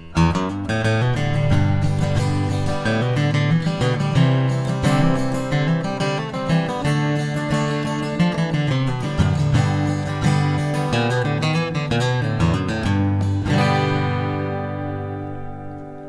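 Solo acoustic guitar playing a chord progression with single-note fills and riffs blended between the chords. It ends on a strummed chord, about three-quarters of the way in, that is left to ring and fade out.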